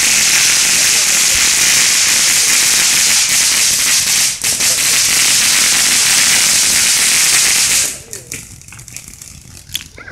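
Ground fountain firework spraying sparks: a loud, steady hiss that cuts off suddenly about eight seconds in.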